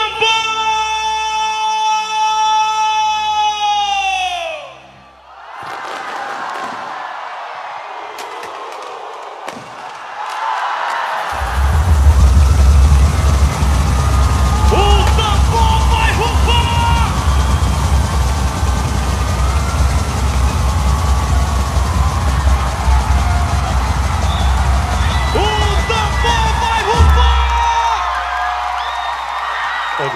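Live boi-bumbá music: a long held note that sags in pitch and stops after about four seconds, then a quieter stretch. About eleven seconds in, heavy drums come in under singing and crowd cheering, and they drop away near the end.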